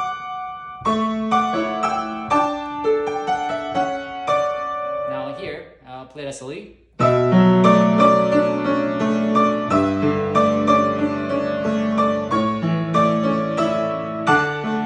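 Acoustic grand piano played by hand: a moderate passage of notes and chords, thinning to a brief lull just past the middle, then much louder, fuller chords over a deep bass line from about seven seconds in.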